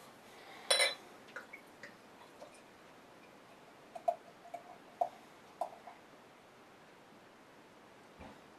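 Beer poured from a glass bottle into a beer glass. A sharp clink of bottle on glass comes about a second in, then a few faint ticks, and a handful of short glugs from the bottle neck around the middle.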